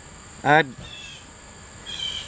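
Steady high-pitched insect drone, like crickets, running continuously, with a couple of short faint chirps around one and two seconds in.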